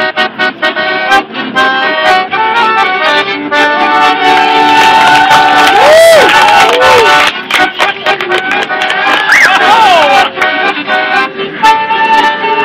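Live acoustic band playing, with accordion leading alongside flute and fiddles.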